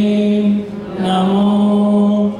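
A man's voice chanting a Jain mantra in japa recitation, drawn-out syllables held on one steady pitch, with a short break about half a second in.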